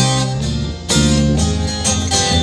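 Acoustic guitars strumming accented chords about once a second in an instrumental break of a song, with no singing.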